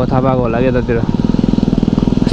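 A motorcycle engine running at low road speed with a fast, even pulse, heard plainly once the talking stops about a second in.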